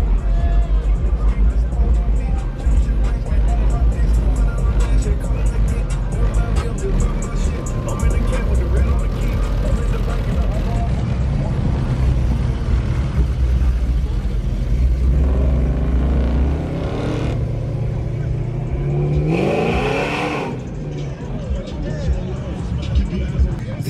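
Customized 1970s Chevrolet cars with big V8 engines driving slowly past, a deep exhaust rumble that fades away about three-quarters of the way through.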